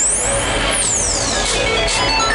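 Electronic dance music in a breakdown. A high synth sweep glides up into the start, then another sweep falls away over about a second and a half, above a steady low bass.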